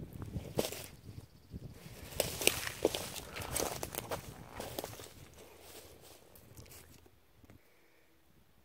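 Footsteps crunching on dry leaves, twigs and wood chips, irregular and fading away over the last few seconds.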